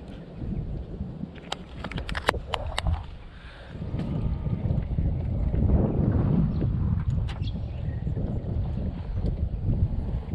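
A quick run of sharp plastic clicks from a small compartment tackle box being handled, followed by low wind rumble on the microphone.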